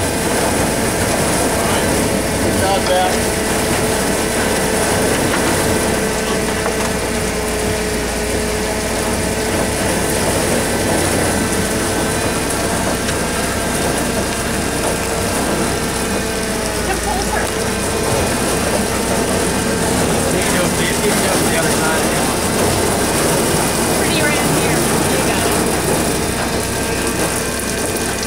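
Crush-pad machinery running steadily, a forklift and a grape hopper's conveyor, as a bin of grapes tips into the stainless hopper. Its steady hum carries a held tone that fades out about two-thirds of the way through.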